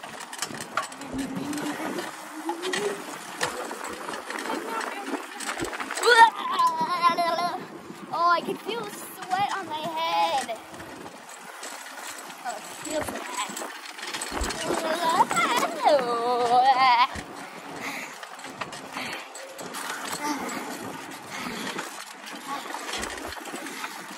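Wind rushing over the microphone as a child rides a bicycle fast downhill, with high, wavering voice sounds from the child three times: about six seconds in, around nine to ten seconds, and about sixteen seconds in.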